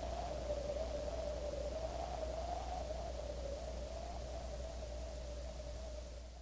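A single held synthesizer note, wavering slightly in pitch and slowly fading, the last sound of an electronic instrumental track, over cassette tape hiss and a low steady hum.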